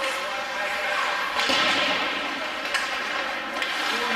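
Hockey skates scraping the ice: a hissing spray about a second and a half in, like a player's hard stop, followed by a couple of sharp knocks from sticks or puck on the ice.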